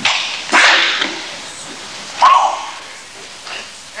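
Two sharp, hissing bursts of breath about half a second apart, then a short shout about two seconds in and a fainter one near the end, as a whipping strike is practised.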